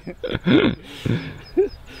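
Men laughing briefly, twice, with a faint high chirp repeating about four times a second in the background.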